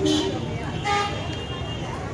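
Indistinct voices over a steady street rumble, with a brief horn toot about a second in.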